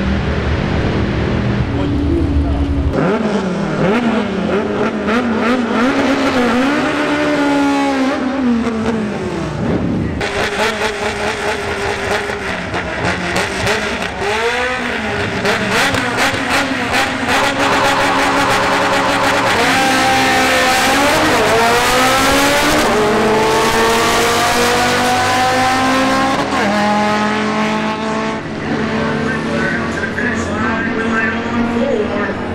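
Drag-racing engines revving hard in bursts at the start line. About twenty seconds in they launch, and the engine note climbs and drops back through several gear changes as the cars pull away down the strip.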